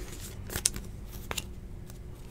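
Trading cards being slid and flicked through by hand, giving a few short clicks and swishes as card edges snap past each other, the loudest a little over half a second in.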